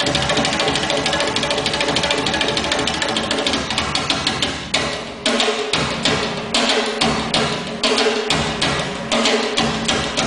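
Solo hand drumming on a set of small drums: a dense run of fast strokes, a brief break about five seconds in, then crisp separate strikes in short phrases with small gaps between them.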